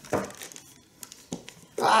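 Crumpled packing paper under the work crinkling in a short sharp rustle just after the start, with a fainter rustle past a second in, as the wooden stand and brush are handled on it; a brief spoken "ah" at the very end.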